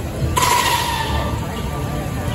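A sudden hiss with a steady tone in it starts about a third of a second in and dies away over about a second.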